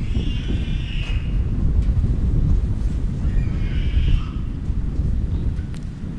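A continuous low rumble, with faint, wavering high cries about a second in and again about four seconds in.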